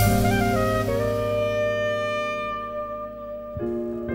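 Live jazz: a saxophone phrase over piano settles into a long held chord that slowly fades, then the piano comes in again with new notes near the end.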